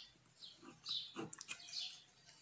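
Faint, short high chirps of small birds, about five in a row roughly every half second, with soft pen-on-paper sounds underneath.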